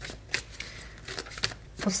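A tarot deck being shuffled by hand, the cards making short, irregular clicks and flicks a few times a second.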